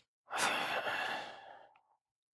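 A man sighing: one long breath out, lasting about a second and a half and fading away.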